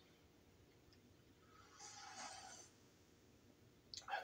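A faint sip of coffee from a mug, a soft slurp lasting about a second, two seconds in; otherwise near silence.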